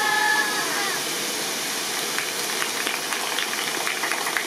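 Steady rush of an artificial waterfall cascading over a stone wall, with a held high pitched note fading out about half a second in and a few faint taps later on.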